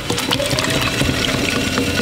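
Wet clay squishing and swishing under cupped hands as a lump is centered on a spinning potter's wheel, a steady watery noise with faint steady tones underneath.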